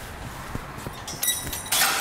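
A stemmed wine glass hits gravel and shatters about a second in, with a ringing, tinkling clatter of shards. A short, loud rush of noise follows near the end.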